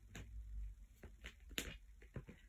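Tarot cards being handled and laid out by hand on a bedspread: a few faint, short clicks and taps of card on card, the loudest about one and a half seconds in.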